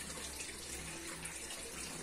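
Faint, steady rushing background noise with a low hum underneath.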